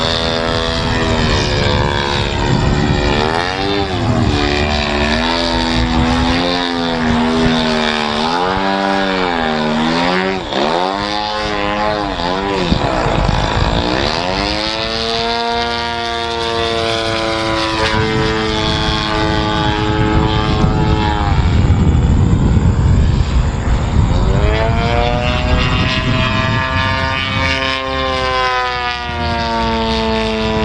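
Radio-controlled model airplane's engine and propeller in aerobatic flight, the pitch swinging up and down quickly for several seconds in the first half, then holding a steadier high note with a brief dip past the middle.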